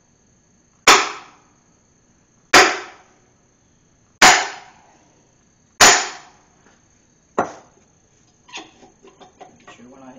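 Sledgehammer striking a tube set over a connecting rod, driving a corroded, seized piston down out of a Mopar 400 engine block's cylinder. Four heavy metallic blows about every one and a half to two seconds, each ringing briefly, then a lighter fifth blow and some small clattering near the end.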